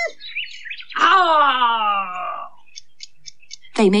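A cartoon character's frightened cry, a long wail that slides down in pitch for about a second and a half, right after a shriek is cut off. A few faint ticks follow.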